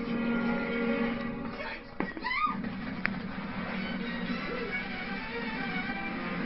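Animated film soundtrack: background music with held tones, broken about two seconds in by a sharp click and a short sliding sound effect, with another click a second later.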